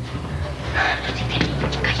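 Background music with scuffling, rustling and hushed voices of several girls moving off together.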